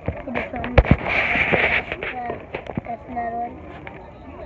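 Children's voices in short fragments, with a couple of sharp knocks about a second in from the phone being handled against its microphone.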